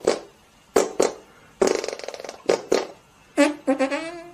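Several short fart sounds and one longer buzzing one about halfway through. Near the end, brass music starts with quick repeated notes.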